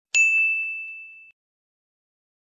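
A single bright metallic ding, a sound-effect stinger, struck once and ringing out for about a second as a clear high tone.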